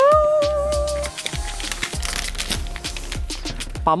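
A zipper being pulled open around a plastic toy carrying case: a fast run of small clicks from about a second in until near the end, under background music with a steady beat.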